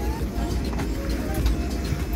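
Steady low rumble of an airliner cabin during boarding, with faint voices of passengers in the background.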